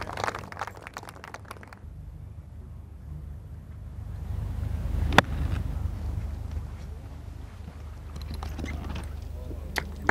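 A golf club strikes a ball about five seconds in: one sharp crack over a quiet outdoor background with a low hum. A small click comes near the end.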